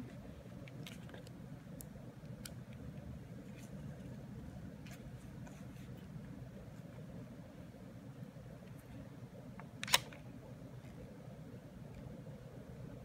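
Canon EOS Rebel XS DSLR being handled, with a few faint button clicks, then one sharp mechanical clack from its mirror and shutter just before ten seconds in.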